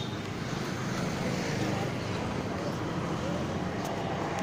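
Steady street traffic noise: a continuous low engine hum with general urban background.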